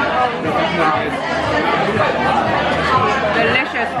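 Many diners talking at once in a crowded restaurant: a steady babble of overlapping conversation.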